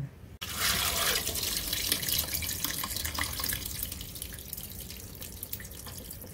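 Water and soaked mung beans pouring from a bowl into a stainless steel mesh colander, splashing and draining into the steel bowl beneath. It is loudest at first and slowly tapers off. The water is rinsing the loosened hulls off the beans.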